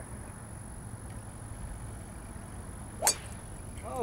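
A golf club striking a teed-up ball: a single sharp crack about three seconds in.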